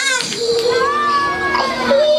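A high voice calling out in long held notes, with a steady high pitch underneath that steps up near the end.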